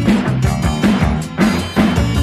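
Instrumental passage of a rock song: a drum kit keeps a steady beat over a bass line, between sung lines.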